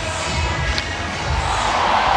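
Ballpark crowd noise over music, the crowd swelling near the end.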